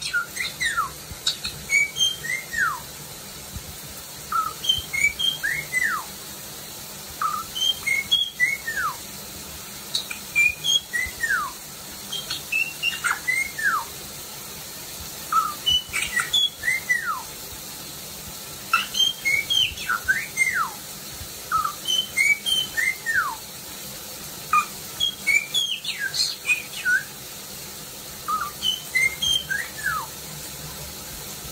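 White-bellied caique whistling a repeated phrase of short chirped notes and falling slurred whistles, the phrase coming again every few seconds with brief pauses between.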